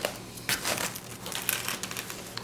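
Cardboard pizza box being handled as a slice is pulled free: light crinkling and scraping with a few short clicks, the sharpest about a quarter of the way in.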